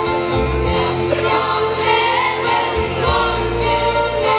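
A school choir of girls' and boys' voices singing a Christmas carol together into stage microphones, in steady sustained lines.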